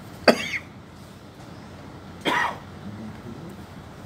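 A person coughing twice: a sharp, loud cough about a third of a second in, then a second, weaker one a couple of seconds later.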